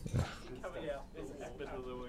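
Faint, wordless voice murmur, much quieter than the speech around it, with a soft low thump just after the start.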